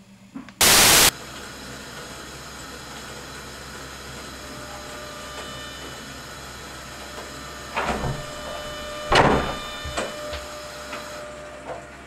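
A loud half-second burst of static-like noise, then a steady electrical hum with faint steady tones, broken by a few louder swishes late on.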